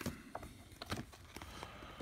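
Pages of a price-guide book being turned by hand: a few light paper rustles and soft taps.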